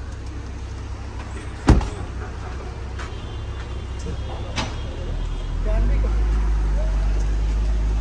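SUV rear door slammed shut with one sharp thud about two seconds in. Then the vehicle's low rumble grows louder and holds steady from about halfway through, as it moves off.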